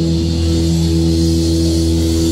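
Live heavy metal band holding one sustained chord on electric guitars and bass, ringing steadily without drum hits.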